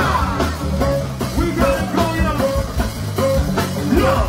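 Live go-go band playing: a steady drum and percussion groove under bass, with a short note figure repeating about every half second.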